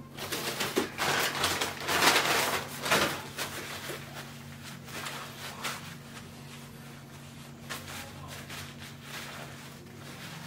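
Paper napkin rustling close to the microphone as hands and mouth are wiped, loudest in the first few seconds, then softer handling noises, over a steady low hum.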